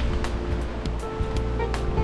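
Background music with held notes and light percussive ticks, over a steady rush of surf.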